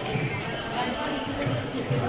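Chatter of people in a busy street, with regular low thumps about every half second from the footsteps of someone walking with the camera.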